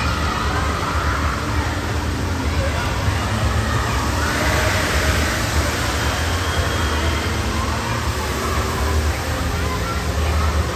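Indoor water park din: a steady jumble of distant voices and splashing water over a constant low rumble.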